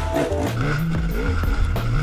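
A dirt bike engine running under load as the bike climbs a steep dirt hill, heard under background music with a steady beat.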